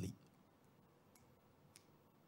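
Near silence: faint room tone with a few faint, sharp clicks spread through it.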